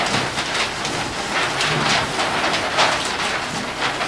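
Paper and cardboard rustling and scraping as large paper sheets and a taped cardboard prop are handled, a steady crackly noise with frequent short crinkles.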